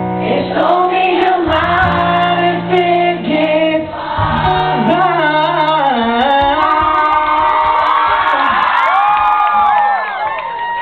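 Rock band playing live, with the lead singer singing over electric guitar and the band. The last few seconds hold long sustained and gliding notes.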